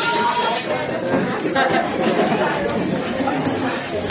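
Several people talking at once in a room: a steady hubbub of mixed chatter with no single voice standing out.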